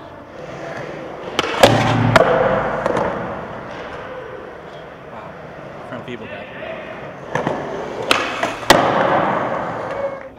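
Skateboard wheels rolling on a concrete park floor, broken by sharp board clacks and landing impacts. These come in two clusters, about a second and a half in and again after about seven seconds.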